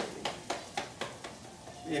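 Quick light taps with a crinkle, roughly four a second and slightly irregular, from fingers tapping on a small bag held against the chest.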